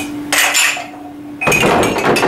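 Ceramic coffee mugs clattering and clinking against each other and the desktop as they are handled and tipped over. A short clatter comes early, and a louder, busier clatter starts about one and a half seconds in.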